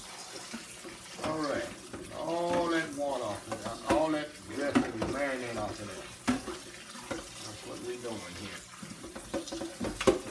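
Tap water running into a kitchen sink over a metal colander as marinated chitterlings are rinsed and worked by hand, with occasional clicks of handling. A voice is heard over the water.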